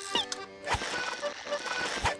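Light cartoon background music of steady held notes, with a quick rising chirp near the start and a short low thump a little later.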